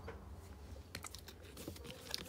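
A few faint, light clicks and taps of fingers handling a stiff paper photocard as it is turned over, over a steady low hum.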